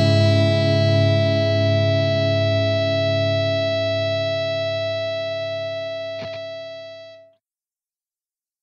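Final chord of a rock and roll song held and ringing out on electric guitar, fading slowly, with a faint click near the end before it cuts off into silence about seven seconds in.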